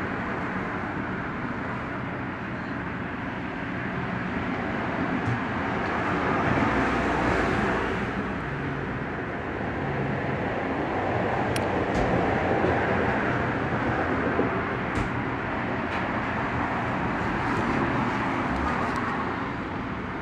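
Steady background din, swelling and easing slowly, with a few faint clicks.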